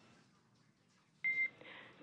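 Near-silent air-to-ground radio loop, then about a second in a single short high beep as the channel is keyed, followed by faint radio hiss.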